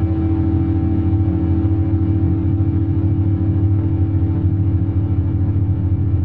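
Quartz crystal singing bowls sounding long sustained tones over a steady low modular-synthesizer drone, one continuous blended wash with no breaks.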